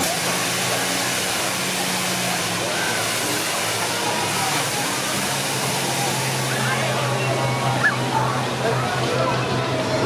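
Amusement-park ambience around a running spinning ride: a steady hiss with scattered distant voices and a low machine hum that drops in pitch about halfway through.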